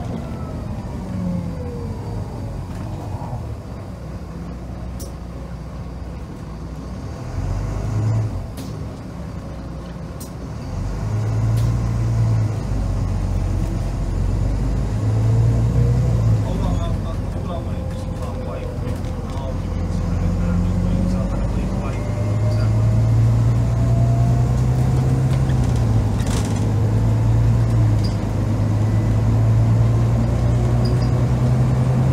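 Volvo B9TL double-decker bus's inline-six diesel pulling hard under heavy throttle, heard from inside the passenger saloon, its note building and breaking several times as the automatic gearbox changes up, getting louder in the second half. A whine rises and falls above the engine, with a few sharp knocks and rattles from the body.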